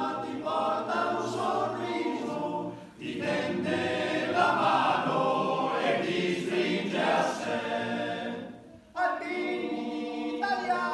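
Male choir singing a cappella in close harmony, a traditional Alpini choral song. The singing breaks briefly between phrases about three seconds in and again after about eight and a half seconds.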